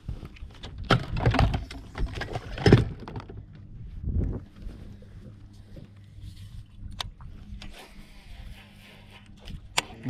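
Knocks and clatter of footsteps and gear being handled on a fiberglass bass boat deck, busiest in the first few seconds, then a couple of sharp single clicks over a faint low hum.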